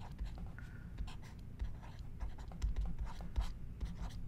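Stylus scratching and tapping on a drawing tablet during handwriting: a string of short, irregular pen strokes over a low steady hum.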